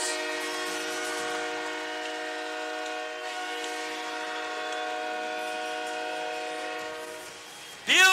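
Hockey arena goal horn sounding for a home-team goal: one long blast of several steady tones at once, fading out about seven seconds in.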